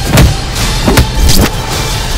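Loud trailer sound mix: a dense low rumble with three sharp hits in two seconds, the first just after the start and two close together near the middle.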